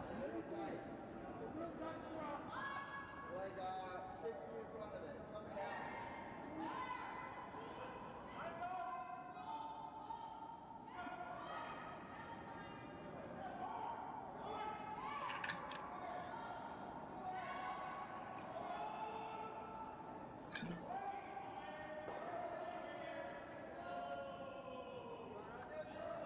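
Curlers' voices calling and talking on the ice, heard at a distance in a large echoing rink, with a few sharp knocks, the strongest near the end.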